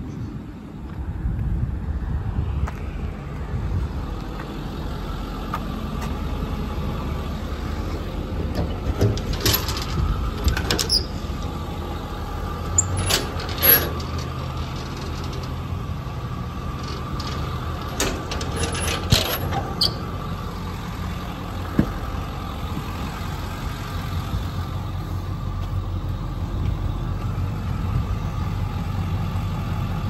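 A truck engine idling steadily, with clusters of sharp metal clicks and clunks about a third of the way in, again around the middle, and once more later, from the truck's aluminum toolbox compartment latches and doors being worked.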